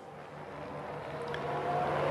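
Formula One cars' turbocharged V6 engines droning steadily in the background of the radio broadcast, gradually growing louder.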